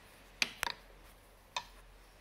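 Light, sharp clicks and taps from hands working the warp threads of a rigid heddle loom: one just under half a second in, a quick cluster of two or three right after, and another about a second and a half in.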